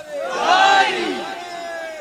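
A crowd of men shouting together, loudest about half a second in, then tailing off into one drawn-out voice.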